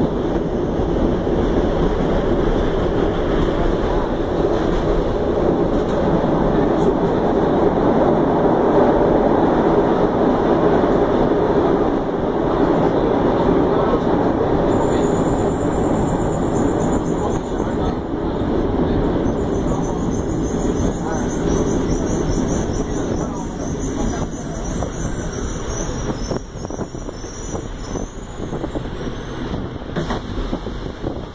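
A subway car running through a tunnel with a steady loud rumble of wheels on rails. About halfway through, a high metallic squeal joins in, and the running noise gradually drops off toward the end.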